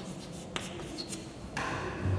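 Chalk writing on a blackboard: short scratching strokes with a sharp tap about half a second in.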